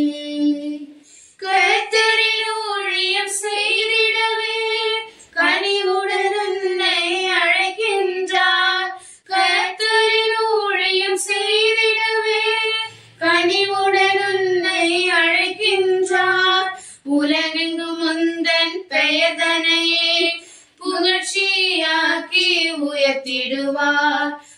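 A single high voice singing a Tamil Christian hymn unaccompanied, in phrases of a few seconds broken by short pauses for breath.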